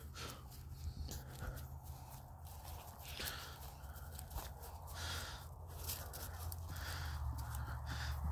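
Faint, soft footsteps and rustling through grass, several irregular steps, over a steady low hum.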